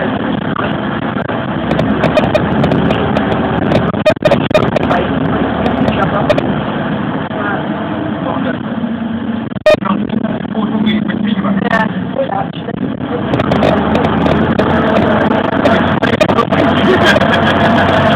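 Inside a moving bus: the engine and road noise drone steadily, with sharp knocks about four and ten seconds in, as from bumps in the road. Indistinct voices murmur under the noise.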